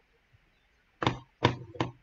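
Three sharp knocks about a second in, in quick succession, each with a short dull ring after it.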